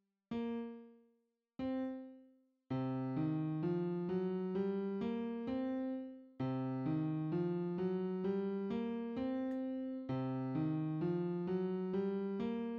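FL Keys piano plugin in FL Studio: two single notes sound, then from about three seconds in the C blues scale plays back as a rising run of notes from C, looping three times.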